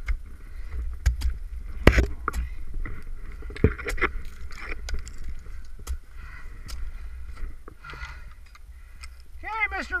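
Ice tools striking and chopping into soft, wet, snow-covered ice, a run of irregular sharp knocks, the loudest about two seconds in and near four seconds, over a steady low rumble.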